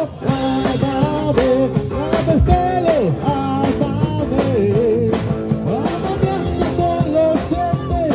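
Live rock band playing through PA speakers: a singer carrying a melody on a hand microphone over electric guitar and a drum kit.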